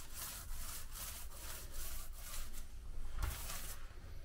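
A small paint roller being worked back and forth over a mortar shower floor, spreading wet liquid waterproofing membrane (Laticrete Hydro Ban XP). It makes a quick run of rubbing strokes, about three a second, with a longer stroke near the end.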